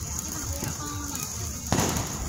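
Ground fountain firework spraying sparks with a steady hiss, and a loud sudden burst of noise near the end, like a firecracker going off.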